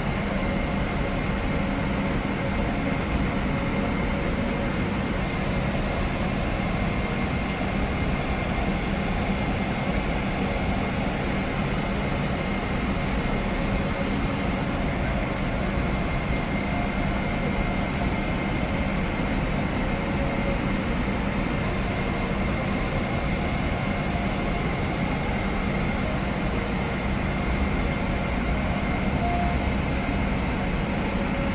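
Steady rush of cabin air conditioning inside a Boeing 777-300ER before departure, with a low hum and a thin high whine under it.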